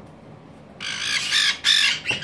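White-bellied caique giving loud, harsh squawks, about three in quick succession, starting just under a second in.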